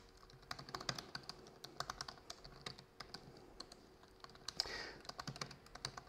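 Typing on a laptop keyboard: faint, quick, irregular key clicks as terminal commands are entered, with a short soft rush of noise a little before the end.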